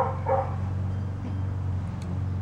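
Dog barking twice in quick succession, two short barks, over a steady low hum.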